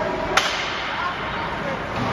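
One sharp crack of an ice hockey impact on the rink about a third of a second in, over steady arena ambience with distant voices.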